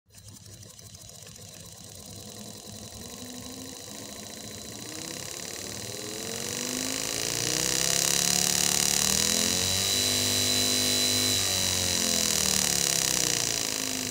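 Small brushed DC motor with a fan blade, driven through a homemade 12 V MOSFET speed controller: its whine climbs in pitch and loudness as the knob is turned up, holds steady for a few seconds past the middle, then drops in pitch as the speed is turned back down.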